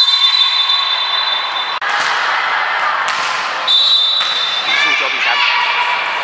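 Referee's whistle in a volleyball match, blown twice: a long blast at the start as a rally ends, and a shorter one about four seconds in, signalling the serve. Players and spectators shout and call out between and after the blasts.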